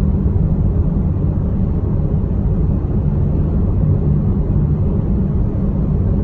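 Steady low rumble of engine and road noise inside the cabin of a car being driven.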